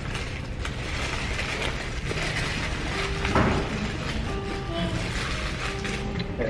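Close-up eating sounds of a fried shrimp burger: crisp crunching and chewing as it is bitten, over a steady haze of restaurant noise. Faint music with held notes comes in about halfway.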